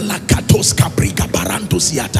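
A man praying in tongues into a microphone: a fast, clipped run of syllables, about five or six a second.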